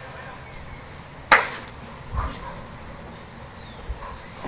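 A few sharp knocks in a metal-mesh dog pen: a loud clank about a second in, a duller thump a second later and a light tap near the end.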